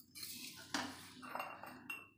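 A steel spoon scraping and knocking against an iron kadhai and a steel mesh strainer as oil and fried amla pieces are scooped out for straining. There are about four light clinks, some with a short metallic ring.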